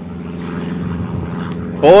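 An engine drone, steady and holding one even pitch, from a motor that is not in view. A man says a short word near the end.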